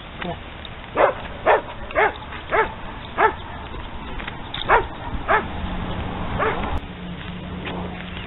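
A dog barking in about eight short barks, roughly every half second at first, then more spaced out, with the last near the end.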